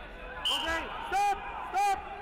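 A man shouting loudly: a short cry about half a second in, then two sharp, very loud shouts near the end.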